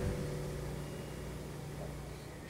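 The last notes of a nylon-string classical guitar dying away, a low ringing that fades slowly.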